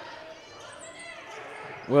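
Faint sound of a basketball game in play, echoing in a gymnasium: a ball dribbling on the hardwood floor with players' voices in the background.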